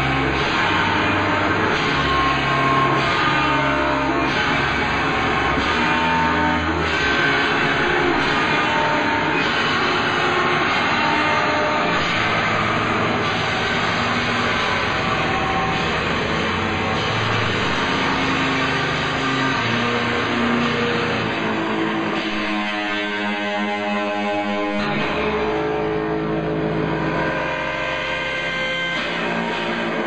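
A band playing post-punk/new-wave music live, with guitar, recorded on a small pocket camera. About three-quarters of the way through, the bass drops away for about two seconds and the sound thins out before the full band comes back.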